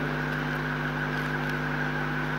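A steady, unchanging hum made of several constant tones, with no speech over it.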